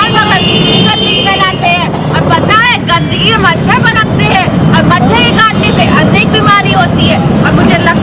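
Voices of street-play performers speaking their lines loudly, the speech going on throughout.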